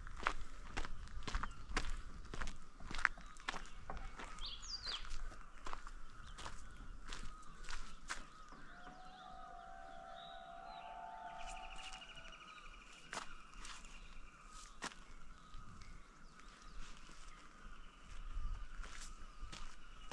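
Footsteps of a hiker on a gravel-and-dirt forest trail, about two steps a second, thinning out for a few seconds midway and then picking up again. A steady high drone runs underneath, with a few bird calls, among them a rising chirp and a short trill.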